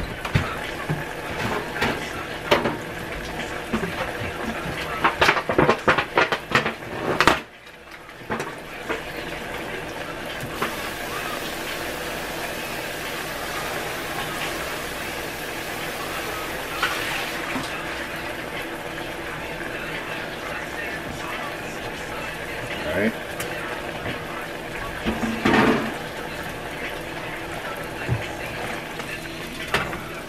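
Breaded country fried steaks frying in a skillet of oil, with pots boiling beside them on the stovetop: a steady sizzling hiss. A run of clicks and knocks comes in the first seven seconds or so.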